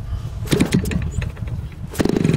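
Converted Homelite 30cc gasoline trimmer engine on a giant-scale RC plane being started on choke. There is a low rumble, and from about half a second in the engine fires in a run of irregular pops as it begins to catch.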